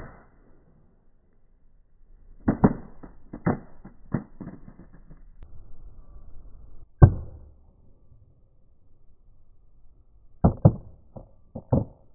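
An LG G Flex smartphone striking pavement on its bottom edge and clattering as it bounces: a series of short, sharp knocks in groups, the loudest single knock about seven seconds in. This is the drop that cracked its screen.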